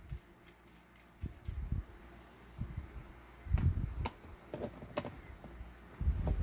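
Quiet handling noises: several soft knocks and rustles as a plastic model engine is put down and parts are moved about on a work table.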